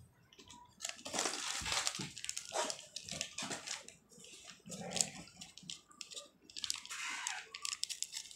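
Pencil writing on paper in a notebook: irregular scratchy strokes.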